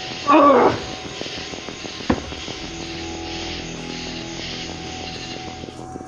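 A man's groan, once near the start, sliding down in pitch, over a steady low music drone; a single sharp click about two seconds in.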